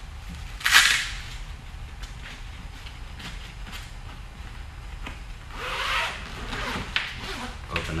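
Nylon rifle bag being handled and unzipped: a short sharp rasp about a second in, fabric rustling, then a longer zipper rasp around six seconds in and a couple of clicks near the end.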